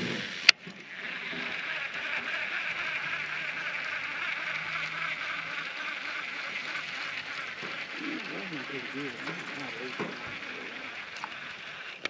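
Baitcasting fishing reel being cranked to retrieve a cast lure: a sharp click about half a second in, then a steady high whir as the handle turns.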